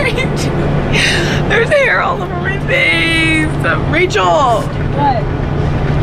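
Girls' high-pitched voices and laughter, with sliding squeals about two to five seconds in, over the steady low drone of a bus engine heard from inside the cabin.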